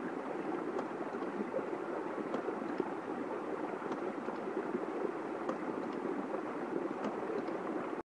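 Hydraulic ram pump running again on its new brass check valve, water rushing steadily out of the valve into the stream. Faint ticks come about every second and a half, in time with the pump's working cycle.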